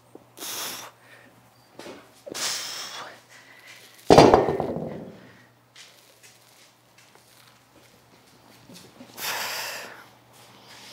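A person exhaling hard through the mouth in short hissing breaths while lifting dumbbells, three times. About four seconds in comes a single heavy thud, the loudest sound, that dies away over about a second.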